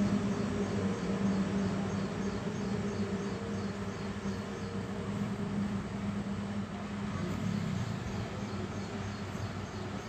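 Electric-driven domestic sewing machine running and stitching: a steady motor hum with a fast, regular light ticking from the needle mechanism, the hum shifting about three quarters of the way through.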